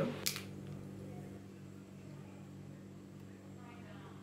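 Quiet kitchen room tone: a steady low hum, with one short sharp click just after the start and a faint voice near the end.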